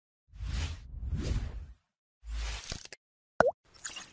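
Intro sound effects: two whooshing swells, then a burst with a heavy low end, then a short plop with a quick bend in pitch about three and a half seconds in.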